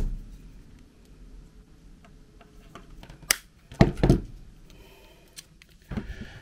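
Cutters snipping the nylon strap of a pole clamp: a sharp click right at the start, then a few more sharp snips about three to four seconds in, with quiet handling between.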